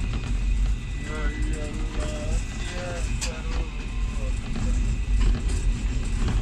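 Steady low rumble of a moving diesel locomotive heard from inside its cab, with a few sharp clicks. A person's voice, in short pitched phrases, is heard over it from about one second in until near the end.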